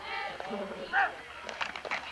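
Overlapping shouts of players and spectators on a football field, with one loud shout about a second in, followed near the end by a quick run of sharp knocks.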